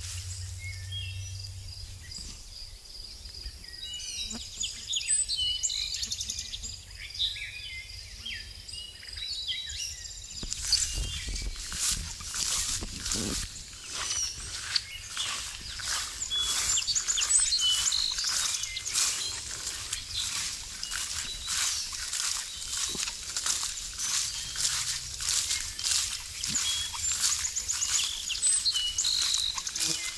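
Wild birds calling and singing, with a thin, steady high note through the first third. From about ten seconds in come regular walking footsteps swishing through damp trail grass, about two a second, while the birds carry on.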